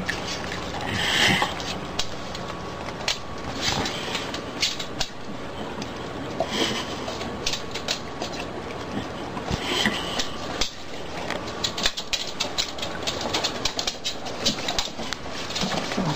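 Dogs licking and eating the last food from their bowls: irregular wet licks and small clicks of tongue and teeth against the ceramic and plastic bowls, with the bowls now and then knocking on the floor.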